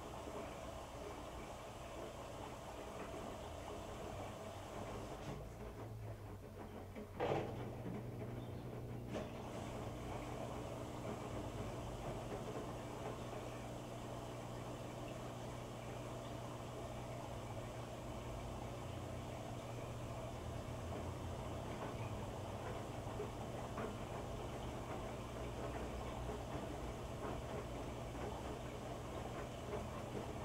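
Electrolux EFLS517SIW front-load washer running its wash cycle, the drum tumbling wet laundry. There is a sharp click about seven seconds in, after which a steady low motor hum runs on.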